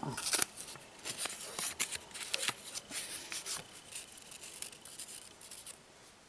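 Fingers turning and sliding a paper postage stamp over paper: scattered soft rustles and small ticks that thin out after about four seconds.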